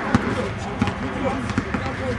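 A basketball being dribbled on an outdoor hard court, several sharp bounces, with players and onlookers talking in the background.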